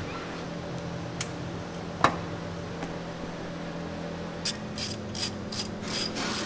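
Steady low shop hum with a couple of isolated sharp clicks. Then, from about four and a half seconds in, a quick run of short metallic clicks from a ratchet wrench turning a bolt on the turbocharger plumbing.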